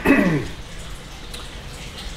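A man clears his throat once, a short vocal sound falling in pitch, then faint room tone.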